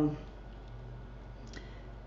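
A spoken 'um' trails off, then low room hum with a faint computer-mouse click about one and a half seconds in.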